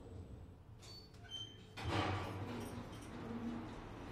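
Elevator car doors of a Kone-modernized traction elevator sliding open at a landing about two seconds in, the rush of the open garage deck's air noise coming in as they part. A couple of faint short high tones sound just before.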